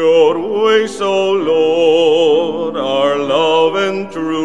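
A solo cantor singing the responsorial psalm with a wide vibrato, in phrases with short breaks, while a piano holds chords underneath.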